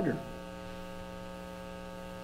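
Steady electrical mains hum, a buzzy tone with many evenly spaced overtones, running unchanged through a pause in speech. A man's voice finishes a word at the very start.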